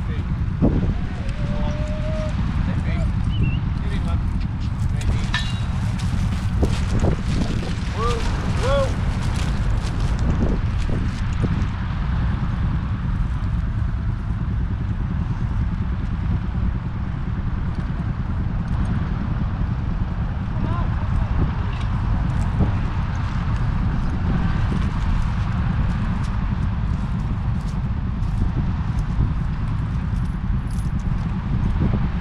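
Steady low rumble of wind on the microphone in an open field, with faint distant voices in the first part and occasional light clicks.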